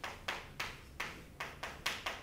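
Chalk writing on a chalkboard: a quick run of short taps and strokes as the chalk hits and leaves the board, about seven in two seconds.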